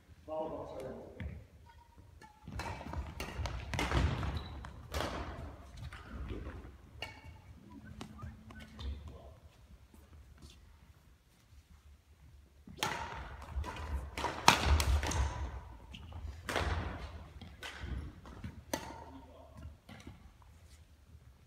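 Badminton rally: rackets hitting the shuttlecock in quick sharp strikes, with thudding footfalls on the court, echoing in a large hall. The strikes come in two bursts, one a few seconds in and a longer one in the second half, with a short voice near the start.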